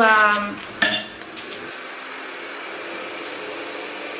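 A wallet being handled: a sharp click about a second in, then a few light metallic clinks.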